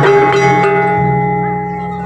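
Gamelan accompaniment for a jaranan trance dance coming to an end: a last few strikes, then the struck metal keys and gongs ring on and fade away.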